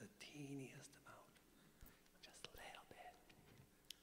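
Near silence: a faint, low voice murmuring briefly near the start, then a few small soft clicks.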